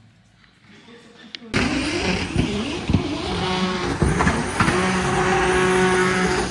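A drift car's engine revving hard at a drift competition, its pitch rising and falling repeatedly as it slides. It cuts in suddenly about a second and a half in, after a near-quiet start.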